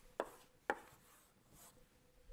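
Chalk striking a blackboard twice, two sharp taps about half a second apart, as a letter is written and boxed.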